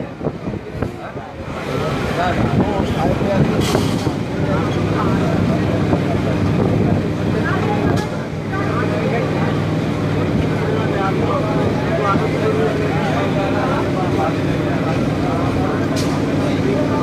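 Suburban electric train running along a station platform: rumble of the carriage with a steady motor hum setting in about four seconds in, under the chatter of many voices from the crowded carriage and platform.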